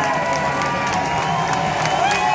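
Large stadium crowd cheering and shouting, with long held shouts and scattered claps over a steady roar.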